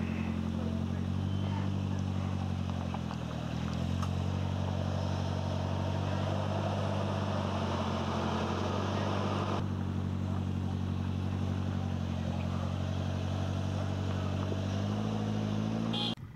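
Suzuki Jimny's 1.5-litre four-cylinder petrol engine running at low revs as the vehicle crawls over rough ground; the revs dip briefly about three seconds in and climb again near the end.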